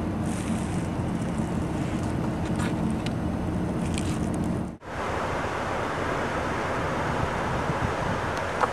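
Steady wind rush on the microphone over the low, steady hum of an idling vehicle engine. A little under five seconds in, the sound drops out for an instant, then the wind noise carries on without the engine hum.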